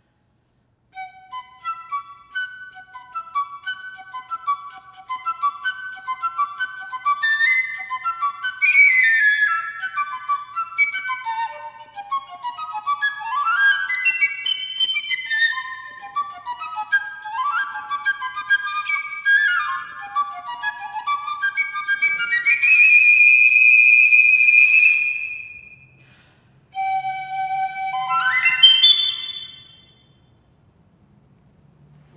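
Solo piccolo playing fast runs of notes that climb and fall. About two-thirds of the way through it holds one long high note, pauses briefly, then closes with a quick rising flourish near the end.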